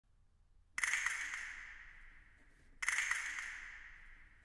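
A high-pitched percussion instrument struck twice, about two seconds apart, each stroke ringing out and slowly fading.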